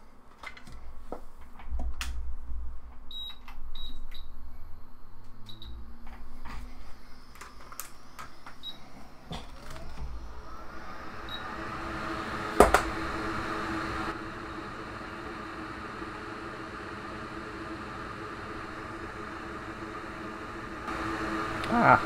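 Hot air rework station blowing steadily on a logic board, its airflow coming on about halfway through and running on with a steady hum. Before it comes on there are scattered handling clicks and knocks and a few short high beeps, and one sharp click sounds shortly after it starts.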